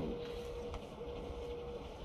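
A faint steady hum at one pitch, broken briefly about a second in, with a single soft tick partway through.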